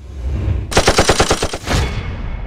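Automatic gunfire sound effect: a rapid burst of about ten shots, starting about a second in, over a low rumble.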